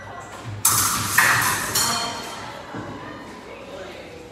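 A quick épée exchange: several sharp metallic blade hits, about half a second in, a second in and near two seconds, with a high ringing that fades, mixed with loud voices or a shout.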